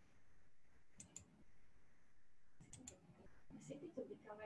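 Near silence broken by faint clicks that come in quick pairs, about a second in and again near three seconds, with a faint voice near the end.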